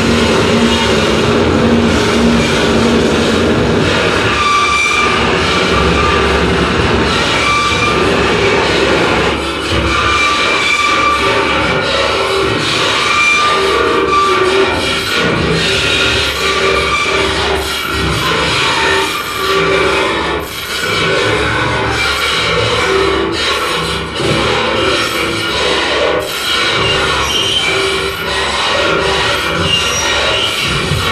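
Live harsh noise / power electronics performance: a loud, dense wall of distorted electronic noise worked from tabletop electronics. Held shrill tones come and go over the noise.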